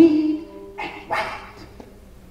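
A woman's voice crying out twice without clear words: a loud cry at the start that fades within half a second, then a shorter one about a second in.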